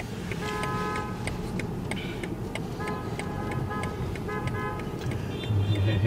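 Road and engine noise from a car in city traffic, with a car horn sounding in several short honks of steady pitch.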